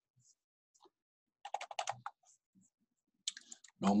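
Computer keyboard keystrokes: a quick run of key taps about a second and a half in, with a few single clicks before and after.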